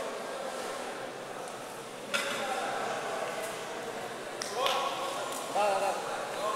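Background chatter of voices echoing in a large sports hall, with one sharp knock about two seconds in and a voice calling out more clearly near the end.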